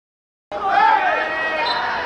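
Dead silence for about half a second, cut off suddenly by players' voices shouting during play.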